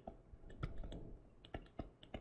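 Stylus tip tapping and clicking on a tablet screen while handwriting words, a run of faint, irregular light clicks.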